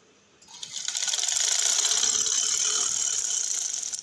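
Sewing machine running a seam: a rapid, steady mechanical clatter of needle strokes that starts about half a second in, builds up over the next half second and stops near the end.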